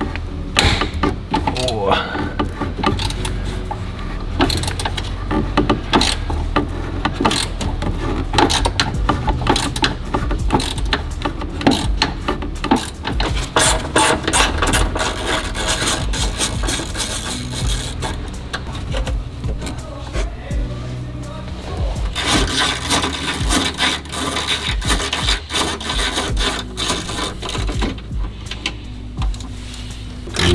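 A socket ratchet with a Phillips bit clicking in runs as it undoes the heater-box screws in a VW T3's front bulkhead, with knocks and scrapes of the tool among the dash. The screws are known to rust in place.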